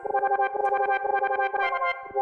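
Instrumental 1980s-style synth-pop music: a held synthesizer chord with fast, even pulses running through it, and no singing.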